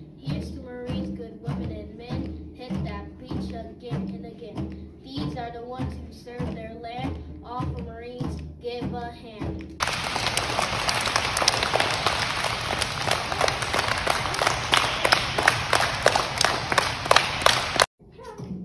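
Backing music with a steady beat of about two beats a second, then, about ten seconds in, a sudden switch to many children clapping their hands in a gymnasium. The clapping cuts off abruptly just before the end.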